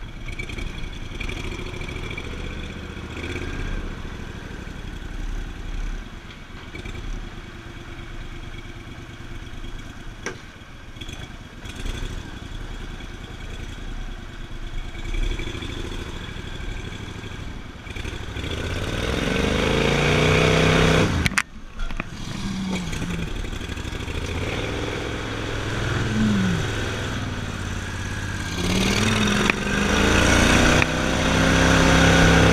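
Gator-Tail surface-drive mud motor pushing a jon boat, running steadily and then revved up louder several times in the second half, with the pitch sweeping up and down.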